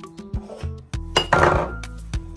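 Background music with a steady beat, and about a second in a short, loud clink and clatter of kitchen items being set down on a worktop.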